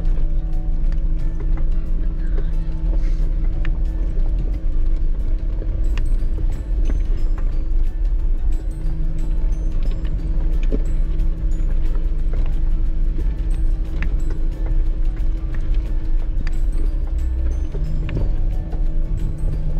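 Jeep Wrangler Rubicon's engine running with a steady low drone while it crawls over a loose gravel trail, heard from inside the cab, with a low rumble and constant rattles and clicks from the heavily loaded rig being shaken by the rough surface. One of the drone's tones drops out for a few seconds in the first half and then comes back.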